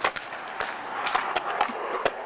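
Skateboard wheels rolling over concrete, with several sharp clacks of the board spread through the roll.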